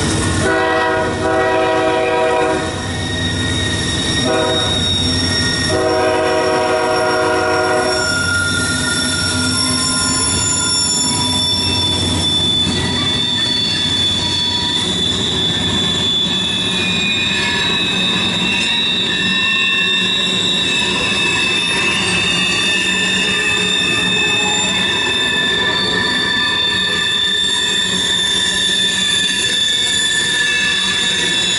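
A freight train's locomotive horn sounds a long blast, a short one and a long one in the first eight seconds, over the rumble of the passing train. Then the string of covered hopper cars rolls by with steady high-pitched wheel squeal.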